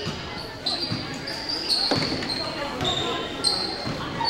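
A basketball bouncing on a hardwood gym floor, a few separate bounces, with short high squeaks of sneakers on the floor in a large echoing gym.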